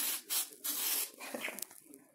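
A sanitizer spray bottle spritzing a package: three quick hissing sprays in the first second, the last one longest, followed by faint rustling.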